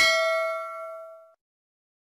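A notification-bell ding sound effect from a subscribe-button animation. It is one bright chime that rings out and fades away within about a second and a half.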